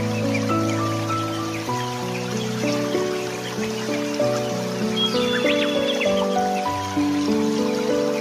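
Background music: slow, sustained chords that change every second or two.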